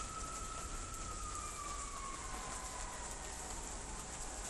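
A distant emergency-vehicle siren: one faint long tone that holds, then slowly falls in pitch from about a second in, over a steady background hiss.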